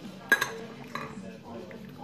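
Steel table knife clinking on a ceramic plate: a sharp clink with a short ring about a third of a second in, and a lighter one about a second in.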